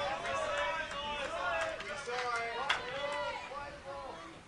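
High-pitched shouting voices of women soccer players calling to each other on the pitch, picked up by field microphones. A single sharp knock comes about two-thirds of the way through.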